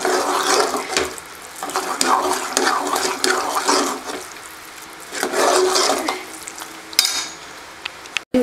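Steel ladle mashing cooked rice in an aluminium pressure cooker, in repeated scraping strokes against the pot, with a sharp metal clink near the end.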